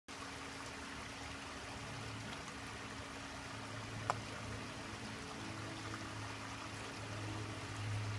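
Steady running, trickling water in a koi pond, with a low steady hum underneath. One brief click about four seconds in.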